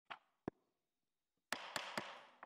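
Two sharp clicks, then, about a second and a half in, a burst of rustling with a few more clicks: handling noise at a desk with a microphone.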